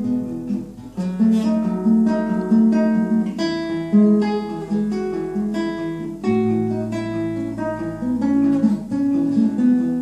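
Nylon-string classical guitar played fingerstyle: a continuous run of plucked notes, with a low bass note ringing under them for a few seconds in the second half.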